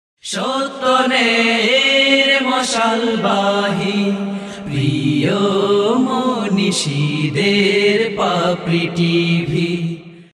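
Channel ident jingle: a voice chanting a melody in long held, gliding notes, as in a vocal Islamic nasheed.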